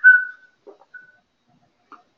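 A person whistling a few short notes that step and glide in pitch, ending about half a second in, then one brief faint note about a second in.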